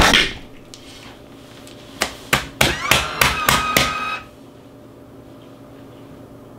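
A FoodSaver vacuum sealer drawing the air out of a bag of pork chops, with a run of sharp clicks and pops from about two to four seconds in, then a quieter stretch while the bag seals.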